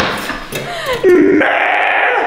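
Young women shrieking and laughing: a sudden outburst, a falling wail about a second in, then loud continuous shrieky laughter.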